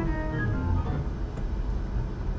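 Steinberg HALion 6 virtual organ and grand piano sounds playing back together in layers, both driven by the same MIDI channel, through a simple run of single notes.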